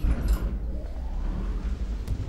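Animation sound effect of a mechanism: a low, steady rumble that starts suddenly with a couple of high squeaks, as a platform hanging on cables is lowered.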